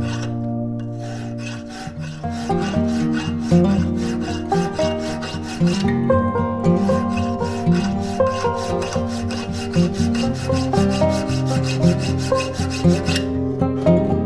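Hand file rasping across a forged steel tomahawk head held in a bench vise, in quick, even back-and-forth strokes with a short pause about six seconds in, stopping about a second before the end. Guitar music plays underneath.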